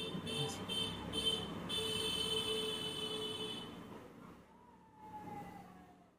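A steady whistle-like tone in the background, broken up for the first second and a half, then held for about two seconds before fading. A brief, faint falling tone follows near the end.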